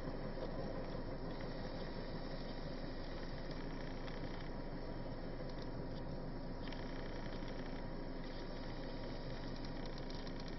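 Steady rolling noise of a freight train of empty tank cars passing on the rails, heard from afar as an even rumble and hiss.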